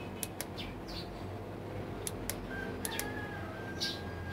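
Faint bird chirps and a few small, sharp clicks over a low steady hum, with a thin steady tone coming in about halfway through. The clicks fit the push buttons of a digital temperature controller being pressed.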